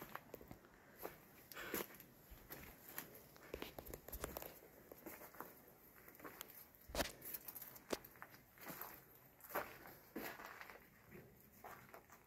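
Faint, irregular footsteps crunching on dry leaves and gravelly dirt, with one louder thump about seven seconds in.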